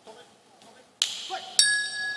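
A single strike of the round bell at about 1.6 s, ringing on with several clear tones, signalling the start of a round. It follows a sudden burst of hall noise about a second in.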